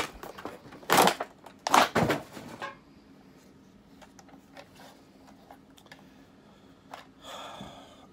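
Plastic blister packaging crackling in two loud, short bursts as a plastic toy is handled, followed by a few faint clicks of hard plastic toy parts turned in the hands and a short soft hiss near the end.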